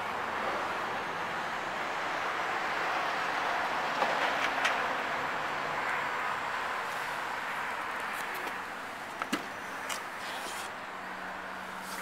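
Steady rushing background noise with a low hum, broken by a few short clicks and knocks: a couple a little past a third of the way in and several more near the end, as the pickup truck's cab door is handled and opened.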